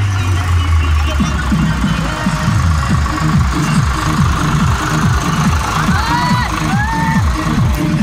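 Loud dance music with a heavy, fast, steady beat played over a loudspeaker, with a tractor engine running underneath and a few snatches of voice near the end.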